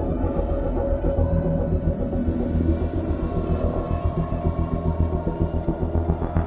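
Psychedelic electronic music from a live set: a deep bass pulsing about three times a second under a dense, layered synthesizer texture.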